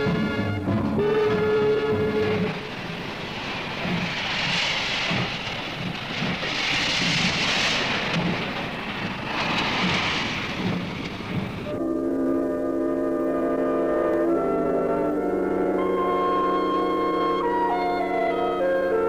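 Music, then from about two and a half seconds in a noisy rush of coal pouring down a coaling-plant chute into a steam locomotive's tender, coming in surges for about nine seconds. It stops abruptly and music with long held notes returns.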